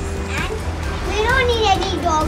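A child's voice speaking briefly, twice, over a steady low rumble.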